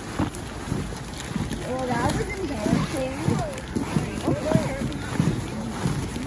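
Children's high voices chattering and calling out, with a low rumble of wind on the microphone underneath.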